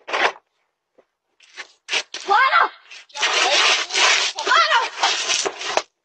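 People's voices shrieking and yelling loudly, the sound distorted and clipped. A short burst comes right at the start, then long shrieks with high rising-and-falling pitch from about two seconds in.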